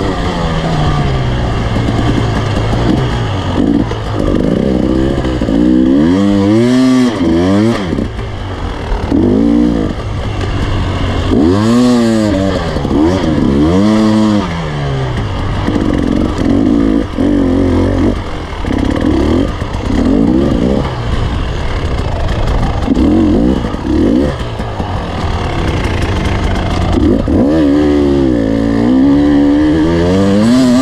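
Enduro motorcycle engine heard close up from the rider's helmet, revving up and down over and over as the throttle is opened and shut and gears are changed on a rough dirt track. The pitch rises and falls every second or two.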